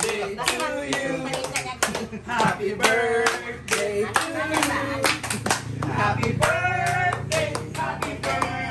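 A group of people clapping their hands repeatedly in rough rhythm, with voices singing along.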